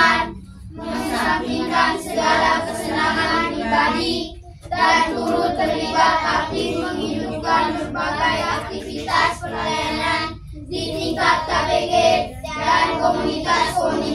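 A group of children singing together in unison, phrase by phrase, with brief pauses between the lines.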